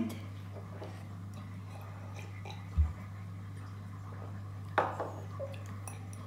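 A child drinking juice from a glass in a quiet room with a steady low hum: a single dull thump about halfway through and a short swallowing sip near the end.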